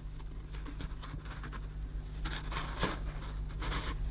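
Cloth dust bag and metal rim of a vintage Electrolux cylinder vacuum handled by hand: faint, irregular rustling and scratching with small ticks, the vacuum itself not running.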